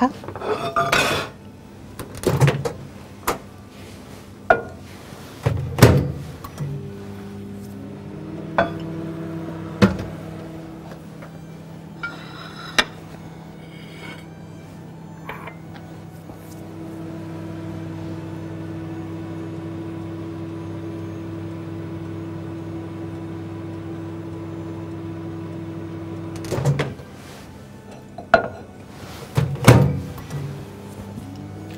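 Microwave oven running with a steady low hum for about twenty seconds while melting butter, after several clicks and knocks from the door and keypad. The hum stops about four seconds before the end, followed by sharp knocks and clatter as the door is opened.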